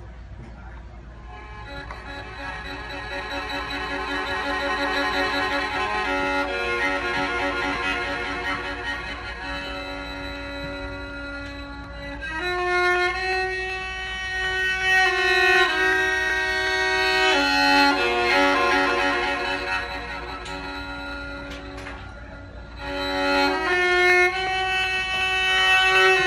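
Solo violin playing slow, held bowed notes that start softly and grow louder, easing off and swelling again twice.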